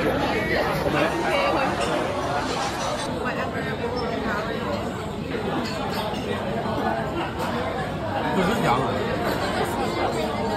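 Indistinct chatter of many diners talking at once in a busy restaurant dining room, a steady babble of conversation with no single voice standing out.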